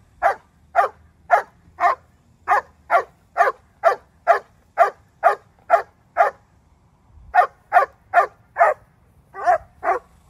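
Young German shepherd barking over and over at a steady pace of about two barks a second, pausing for about a second partway through, then barking again.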